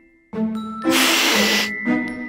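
Tabby kitten hissing once, a sharp hiss just under a second long starting about a second in, over background music of chiming mallet tones.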